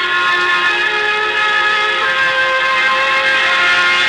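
Orchestral music playing slow, held chords that shift a few times: the dramatic music cue that opens the radio play after the announcer's introduction.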